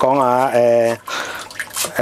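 Chinese cleaver chopping coriander on a wooden chopping board: a few light knife strikes in the quieter second half.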